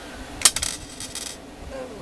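Small hard round pieces clinking together in the hands: a sudden bright clatter about half a second in, followed by a short run of lighter clicks and jingling that stops before the second mark is reached.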